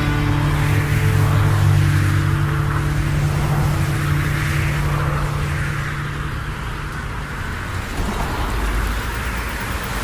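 End of a rock song: the last low chord held and ringing out under a swelling, noisy wash, the held notes dying away about seven seconds in and leaving a rough rumbling noise.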